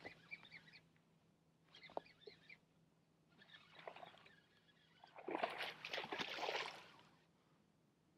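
Short bursts of a baitcasting reel being cranked as a topwater frog is worked, every second or two. About five seconds in comes a longer, louder stretch of reeling and splashing as a small bass is hooked and fought toward the boat.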